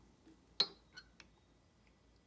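Small metal-on-metal clicks from handling a dial test indicator and its magnetic-base arm against a chainsaw crankshaft: one sharp click with a brief ring a little over half a second in, then two fainter ticks.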